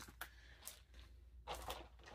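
Mostly quiet room tone with a low steady hum, broken by a couple of faint light ticks in the first second and a short soft rustle near the end: craft supplies such as metal dies and their packaging being handled.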